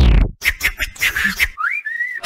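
Cartoon sound effects on a TV channel bumper: a falling tone that cuts off about a third of a second in, a quick run of clicks and pops, then a short rising whistle near the end.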